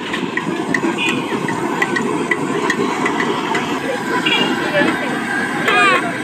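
Eggs deep-frying in a wok of hot oil, a dense steady crackle. Over it comes a run of short, evenly spaced high tones about twice a second, and voices are heard near the end.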